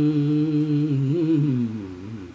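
A man humming unaccompanied, holding one long low note of a Tamil film song's melody, which wavers slightly and then falls in pitch and fades away near the end.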